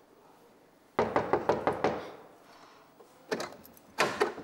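Rapid knocking on a wooden door: about eight quick raps within a second, then a sharper clack near the end.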